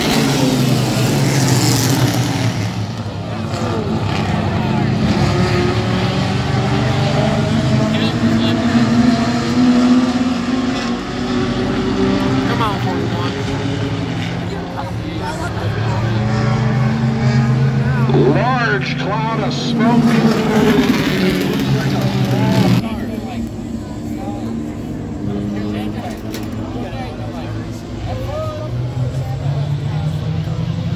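A field of Renegade-class stock cars racing on an oval track, several engines at once rising and falling in pitch as they rev and pass by. About 23 seconds in the engine noise drops noticeably.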